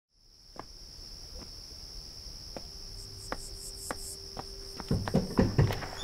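Night ambience of crickets chirping steadily, fading in from silence, with a few soft thumps near the end.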